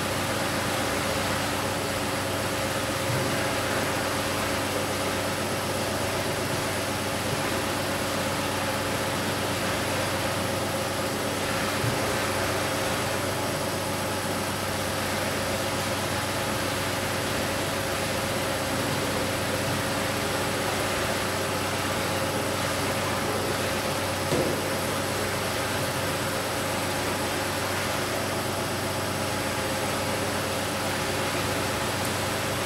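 Steady machinery hum and rushing noise from a running air–water two-phase flow loop, its pump and air supply feeding the horizontal pipe, with an occasional faint knock.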